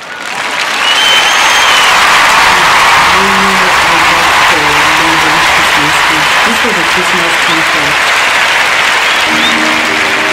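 A large concert-hall audience applauding, coming up within the first second and easing slightly toward the end. Just before the end, music begins with steady held notes.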